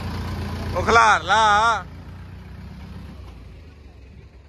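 Diesel engine of a Mahindra 575 DI tractor towing a loaded trolley, running with a low rumble that fades away as it passes. About a second in, a loud wavering high-pitched call, strongly warbling, cuts in for under a second and is the loudest sound.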